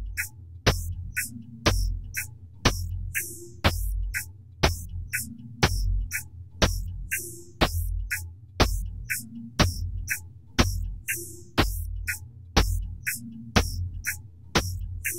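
Synthesized electronic drum loop from the Virtual ANS 3 spectral synthesizer: sharp kick-like thuds with clicky attacks, the loudest about once a second and lighter hits between, each topped by a short hissing burst, over a low humming drone.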